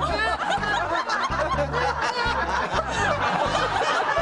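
Upbeat music with a steady bass beat, with several people laughing and chuckling over it.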